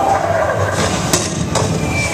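Dark ride's effects audio: a dense low rumble with two sharp cracks, about a second and a second and a half in.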